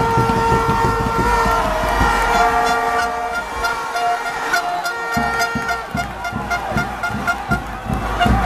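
Plastic stadium horns blown in a large crowd of football fans: a long steady note, then short repeated toots from about six seconds in, over dense crowd noise with low thumps.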